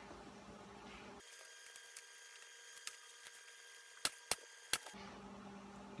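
Pneumatic staple gun firing three times in quick succession about four seconds in, each a sharp snap, after a few faint handling clicks: the edge of the vinyl rear window being stapled down again.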